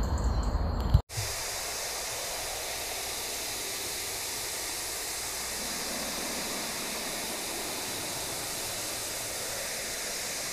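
Brief low rumble of a hand handling the phone, ending in a sharp knock, then a hard cut about a second in to steady static hiss like a detuned TV that runs unchanged under the end card.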